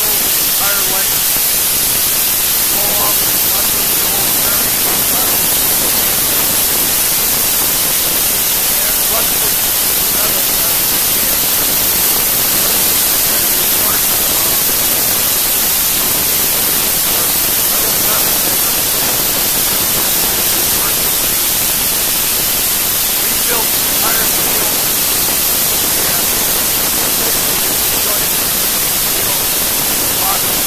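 Sandblasting nozzle blasting abrasive against the rusted steel keel and hull of an antique launch to take it down to bare steel: a loud, steady hiss that runs without a break.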